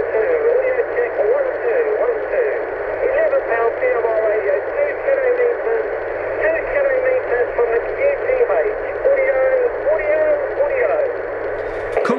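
A man's voice coming through an FM radio receiver: a VV-898 mobile transceiver on 446.118 MHz picking up a half-watt PMR446 handheld about two kilometres away. The voice is thin, with a steady hiss under it. The carrier comes in well but the audio is weak, which the operator puts down to the 18-foot CB antenna not resonating at 446 MHz.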